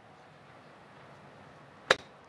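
Golf club striking a ball off an artificial-turf hitting mat: one sharp, short click near the end, after a quiet stretch.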